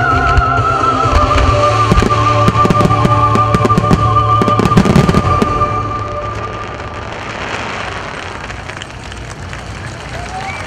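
Fireworks set to music: a rapid run of sharp bangs and crackles from low mines and aerial shells over loud music with a sustained, wavering high note. About six seconds in the music and bursts die away, leaving a fainter crackling hiss.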